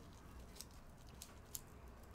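Faint handling noise of gloved hands working a paper-wrapped chicken heart into a voodoo doll: a few soft clicks and rustles over near-silent room tone, the sharpest click about one and a half seconds in.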